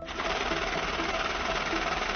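Banknote counting machine running, a stack of bills riffling rapidly through it in a steady, dense whir that starts suddenly.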